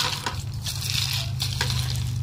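Weasel nut gatherer's wire cage rolling over grass and dry leaves, a dense crackle and rustle with pecans rattling inside the half-full cage and a few sharp clicks.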